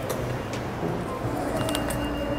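Background music over the noise of a busy subway station, with a few short sharp clicks about half a second in and near the end.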